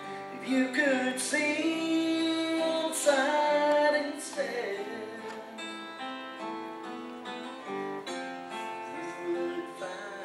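A man singing while playing an acoustic guitar, strummed and picked; the voice is strongest in the first four seconds.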